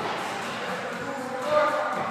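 Indistinct voice sounds echoing in a large gym hall, with a louder, breathier swell about one and a half seconds in.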